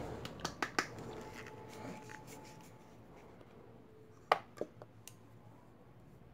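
Light clicks and knocks of small plastic paint jars and lids being handled as a pot of black fabric paint is fetched, opened and set down, with two sharper clicks about four and a half seconds in.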